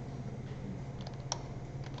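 A few sparse keystrokes on a computer keyboard in the second half, the middle one the loudest, over a steady low hum.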